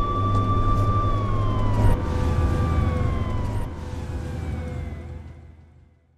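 Trailer sound design: a sustained ringing tone over a low rumble, its pitch sliding downward twice while it slowly fades away to nothing.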